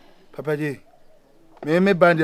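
A man's voice: a short voiced sound about half a second in, then near the end a loud, drawn-out vocal held on one pitch and wavering, like a long sung or chanted "eee".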